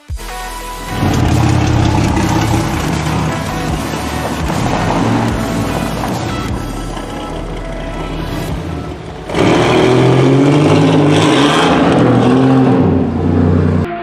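1986 Oldsmobile's engine running and revving, loud from about a second in and revving harder from about nine seconds until near the end, with music behind it.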